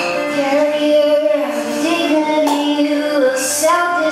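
A woman singing solo to her own acoustic guitar, in long held notes that bend gently in pitch.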